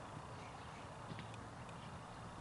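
Faint outdoor background noise with a steady low hum and a few faint, short high chirps scattered through it.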